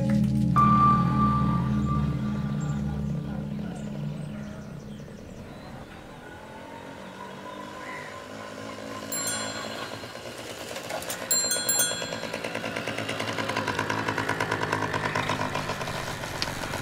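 Background music fades out over the first few seconds. A bell rings briefly around the middle, then a small motorcycle engine approaches and runs with an even, rapid pulse, growing louder toward the end.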